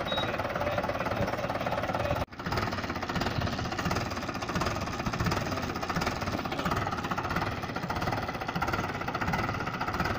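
Mahindra 575 DI tractor's diesel engine running steadily, with a brief break in the sound a little over two seconds in.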